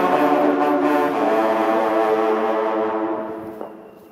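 Ensemble of French hunting horns (trompes de chasse) playing held chords, shifting to a new chord about a second in, then dying away near the end into a brief pause.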